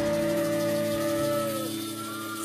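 A live cumbia band's closing chord held on the keyboard as the drums and bass stop. The held notes fade a little, and one of them slides down in pitch near the end.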